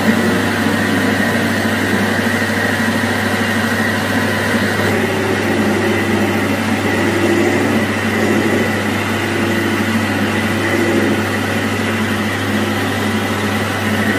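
Capstan lathe running with its spindle turning during a turning cut on the rivet blank: a steady machine hum with a faint high tone above it.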